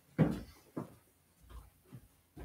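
A few short knocks and thumps, the loudest about a quarter of a second in, followed by three softer ones.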